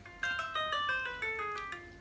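Instrumental backing track playing the song's intro: a melody of short plucked notes stepping downward in pitch.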